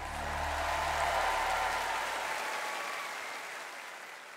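Concert audience applauding, swelling about a second in and then tapering off, while the last held low chord of the song dies away in the first two seconds or so.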